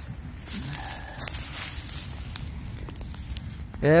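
Rustling and crackling of dry leaf litter and twigs as a person gets up from a crouch and shuffles a step or two on the forest floor.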